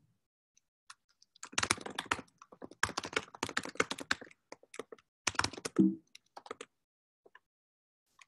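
Fast typing on a computer keyboard: dense runs of keystrokes with short pauses, starting a second and a half in and tailing off into a few single clicks near the end.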